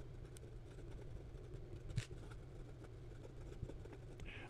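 Fountain pen with a medium Jowo steel nib writing quickly on notebook paper: faint scratching of the nib on paper with a few light ticks, over a low steady hum.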